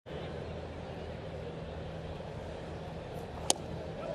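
Steady ballpark crowd murmur with a low hum, heard over a game broadcast, with one sharp click about three and a half seconds in.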